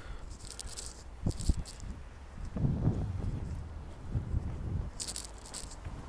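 Footsteps on wet paving and rustling of the handheld microphone: a few short scuffing, hissy sounds and soft knocks over a low rumble.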